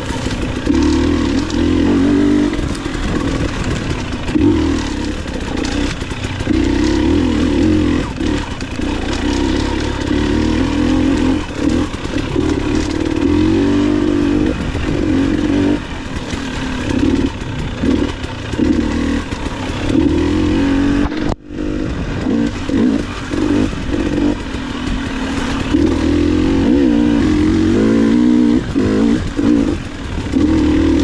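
Dirt bike engine revving up and down constantly as the throttle is worked on a rocky singletrack, with clatter from the bike over the rocks. The sound cuts out for a split second about two-thirds of the way through.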